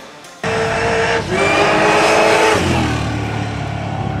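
A high-powered drag car accelerating hard. The engine note starts suddenly, holds one pitch, breaks briefly about a second in like a gear change, then climbs again before falling away near the three-second mark.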